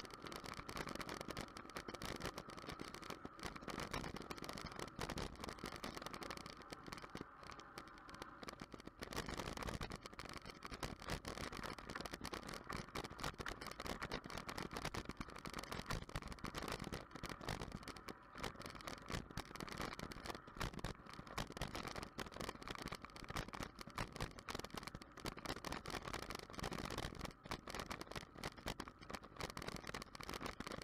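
Bicycle riding along a rough tarmac path, picked up by a camera mounted on the bike: steady tyre and road noise with constant fast rattling and clicking.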